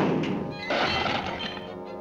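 Cartoon crash sound effect: a sudden thunk, then a breaking, crashing clatter about half a second later, over orchestral music.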